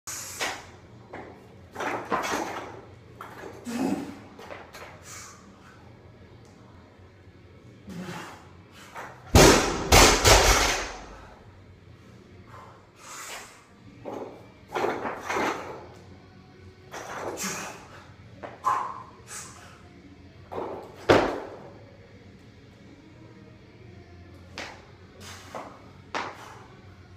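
Loaded barbell with bumper plates, 125 kg, worked through a power clean, front squat, clean and jerk: the bar and plates clank at each pull and catch. The loaded bar hits the floor about nine seconds in with several heavy bouncing thuds, and one hard thud comes about 21 seconds in.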